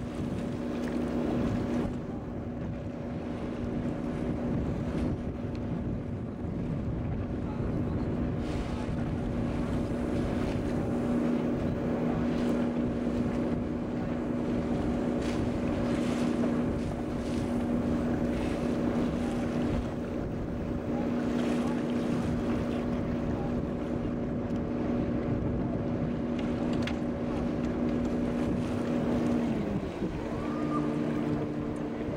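Tour boat's engine running at a steady pitch under wind buffeting the microphone and water washing past the hull. Near the end the engine note drops as the boat throttles back.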